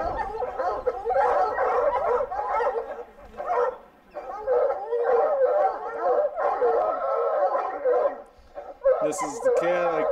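A pack of hounds baying continuously at a mountain lion treed above them, with long overlapping bawls and brief lulls; this is the sound of hounds barking treed.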